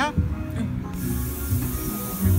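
Ride music with a steady beat plays. About halfway through, a loud, even hiss of spraying water starts suddenly and holds.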